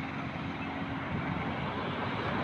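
Steady outdoor background noise from a field recording, a constant rumbling hiss with a faint low hum and no distinct events.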